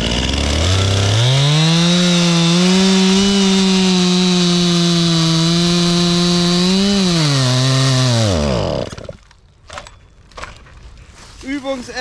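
Petrol Stihl chainsaw revving up and cutting through a thick oak log, holding a steady high pitch under load. At about seven seconds the engine sags and at about nine seconds it dies out mid-cut: it has run out of fuel.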